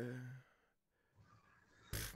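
The tail of a man's long, drawn-out hesitant "ehh", which sags in pitch and fades out within the first half second, followed by near silence until speech starts near the end.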